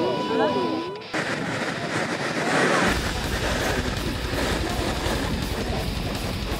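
A loud rush of air and churning water starts abruptly about a second in, and a deep rumble joins it a couple of seconds later. It comes from an Oyashio-class submarine blowing its ballast tanks, with compressed air driving water out and foaming up along the hull.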